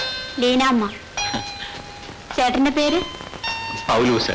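A voice sings the same short phrase twice, lilting up and down. Between the phrases, clear bell-like tones ring and are held.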